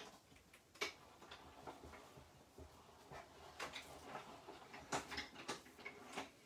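Kaleido hot foil and die-cutting machine being hand-cranked, a plate sandwich feeding through its rollers. The mechanism gives faint clicks and ticks, one about a second in and a quicker run of them in the second half.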